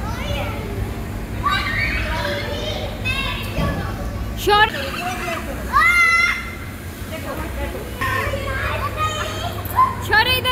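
Children's voices shouting and chattering at play, with two loud, high-pitched shrieks about halfway through, over a steady low hum.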